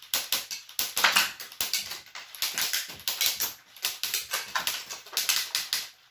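A Lego gun firing rapidly, a fast, uneven run of sharp plastic clicks, mixed with the clatter of Lego bricks being knocked over as the shots hit the targets.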